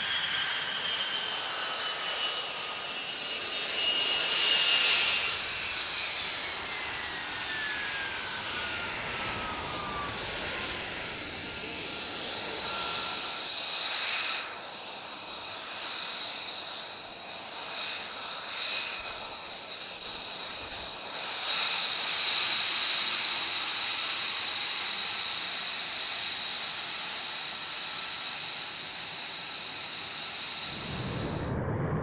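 F-35B's Pratt & Whitney F135 jet engine running at low power on the ground, a high-pitched whine with rushing exhaust noise. Over the first ten seconds the whine falls steadily in pitch, then a steady high whine holds through the rest.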